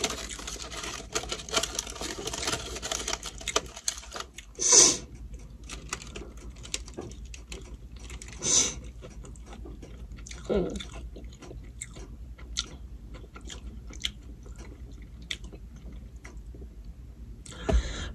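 A person chewing a burrito with their mouth closed: close, wet mouth clicks and smacks, busiest in the first few seconds. Two louder hissing sounds come about five seconds in and again about eight and a half seconds in, and a short falling hum comes a little past the middle.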